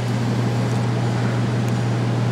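A steady, unchanging low mechanical hum with a hiss over it, from a machine running in the background.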